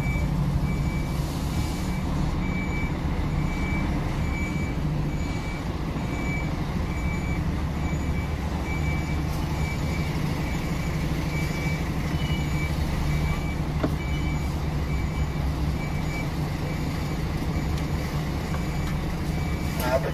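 Truck reversing alarm beeping steadily, about twice a second, over the low running of a diesel truck engine moving slowly.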